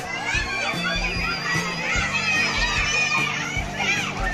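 Many children's voices calling and shouting over one another as they play, a continuous overlapping chatter, with music playing underneath.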